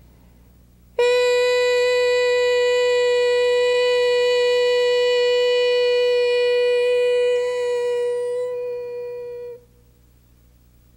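A woman's voice intoning one long devotional chant on a single held note. It starts abruptly about a second in, holds steady, then softens and stops about nine and a half seconds in.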